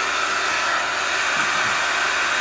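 Steady rushing of a heater fan blowing warm air in a car cabin.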